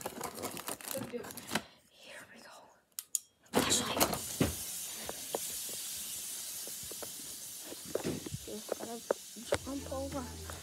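Handling noise from a phone being carried and moved about: rustling and scattered knocks, with a steady hiss that starts suddenly about three and a half seconds in.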